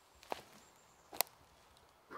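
Two short, faint knocks about a second apart, the second one sharper, from a disc golfer's feet planting on the forest floor during a forehand approach throw.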